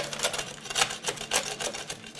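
Spatula scraping caramelized nuts off a metal baking sheet they have stuck to: a quick, irregular run of scrapes and clicks.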